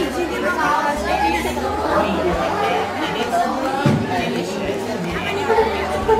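Chatter of several students' voices talking over one another in a classroom.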